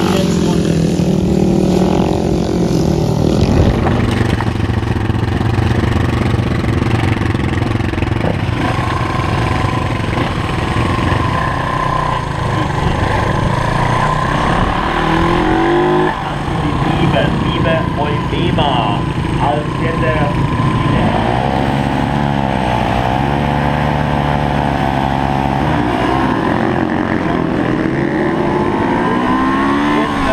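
Racing motorcycles running through a bend on a dirt flat-track oval, their engines revving. About halfway through the sound cuts to one Honda motorcycle engine heard close up from the rider's seat, its revs rising and falling repeatedly with throttle and gear changes.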